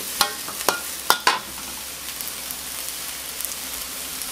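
Bok choy and minced pork sizzling in a hot steel wok, with a metal spatula striking and scraping the wok about four times in the first second and a half, then a steady sizzle.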